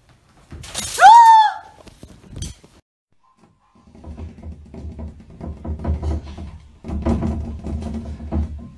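A sudden crash as a cat leaps at a hanging wicker pendant lamp, with a short high cry that rises and falls over it and a thud a second later. Music with a low beat comes in about halfway through.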